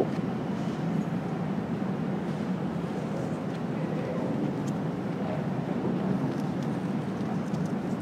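Steady low background rumble of a large exhibition hall, its ventilation noise carrying faint distant voices now and then.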